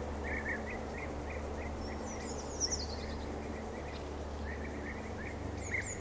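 Outdoor ambience: a steady background hiss and low hum with small birds chirping, short repeated notes throughout and a brief higher, falling twitter about two seconds in.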